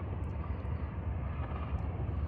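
Mini bike's small single-cylinder engine idling steadily with a low, even putter while the bike stands still.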